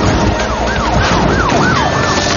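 Police siren in a fast yelp, its pitch sweeping up and down about three times a second, over the noise of cars on the road.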